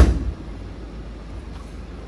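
Boot lid of a 2019 BMW 320d saloon shut with one heavy thump that dies away quickly, followed by a low steady hum.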